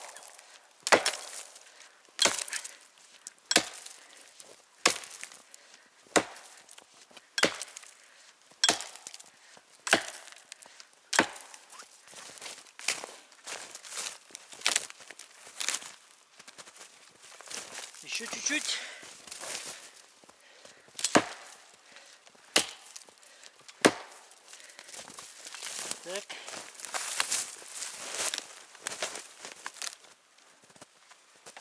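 Heavy forged felling axe (1850 g head on a 75 cm handle) chopping into the base of a dead standing tree: sharp strikes about every 1.3 seconds for roughly the first half, lighter hits after that, then three more strikes past the middle as the tree is worked toward falling.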